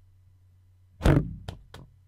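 Stock 'Rubber 1' rubber-ball bounce sound effect playing once: a heavy thud about a second in, then two lighter bounces coming quicker and quicker as the ball settles.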